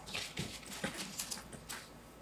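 Faint, scattered clicks and light ticks of small handling noises in a quiet room, irregularly spaced across the pause.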